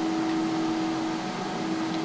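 Cooling fans of a running desktop PC, whirring steadily with a constant humming tone.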